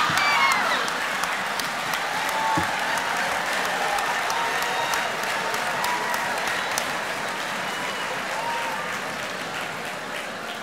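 Auditorium audience laughing and applauding after a joke's punchline, a dense spread of clapping with voices in it that slowly dies down.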